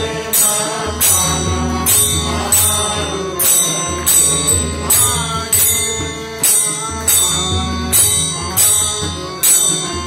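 Devotional bhajan: a man singing to harmonium and tabla. A bright metallic strike keeps time about every three-quarters of a second.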